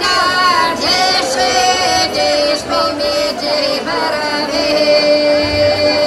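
Women's folk group singing a Pomak folk song unaccompanied through a stage PA, the voices sliding between notes and then settling on a long held note for the last second or two.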